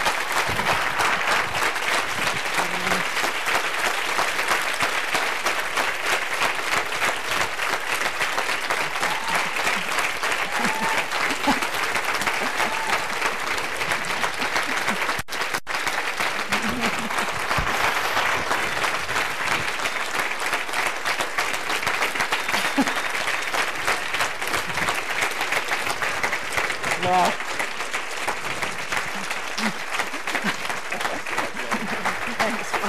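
An audience applauding steadily for a long stretch, many hands clapping at once, with a few faint voices mixed in.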